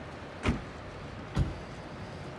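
Two short, dull thumps about a second apart, standing out loudly over a steady hum of street noise.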